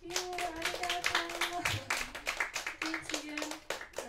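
Applause from a small audience, many hands clapping quickly and unevenly, with a voice sounding over it.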